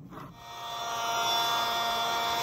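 Camping air-mattress inflation pump switching on about a third of a second in. Its small electric motor and fan build over about a second to a steady whir with a hum of several tones. It is pushing air through a hose into a respirator mask.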